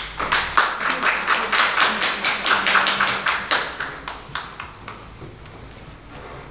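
Brief audience applause: a small group clapping, about four claps a second, fading out after about four seconds.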